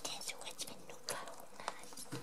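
Rabbits chewing a treat: faint, irregular short crunches and clicks, about half a dozen in two seconds.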